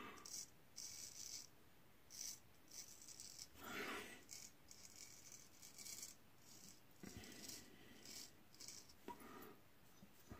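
Gold Dollar straight razor scraping stubble through shaving lather on the neck and chin: a series of short, faint strokes, each a brief scratchy hiss.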